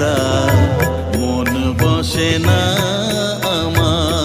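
Background music: an Indian devotional-style tune with a wavering lead melody over a steady percussion beat.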